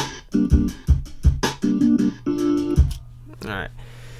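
Playback of a sampled hip-hop beat: a chopped drum break with kick and snare hits under sliced keyboard chords played from the EXS24 sampler. It stops about three seconds in.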